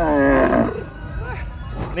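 A loud roar-like vocal sound, falling in pitch and lasting under a second at the start, over background music.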